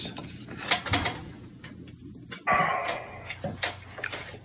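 Ozark Trail knife blade carving an oak spoon blank: a run of short sharp clicks as it bites the wood, with a longer scraping stroke about two and a half seconds in.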